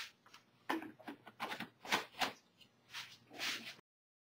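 Faint, irregular rubbing and rustling of a cloth wiping a mold, in a run of short scrapes that stops abruptly near the end.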